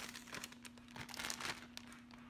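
Plastic bag of chopped kale crinkling as it is handled, a quick run of crackles, over a faint steady hum.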